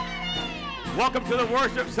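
Sustained keyboard chords under a high voice that glides up and down in wide, sing-song sweeps of pitch, louder in the second half.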